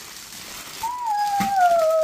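A house cat giving one long meow about a second in, sliding down in pitch as it is drawn out.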